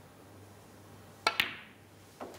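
Snooker shot: the cue tip strikes the cue ball, then the cue ball clicks into a red a split second later, with a short ring after the second click.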